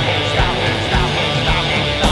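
Rock band track in an instrumental break: guitar playing a repeated riff of falling phrases, about two a second, over drums with a steady kick.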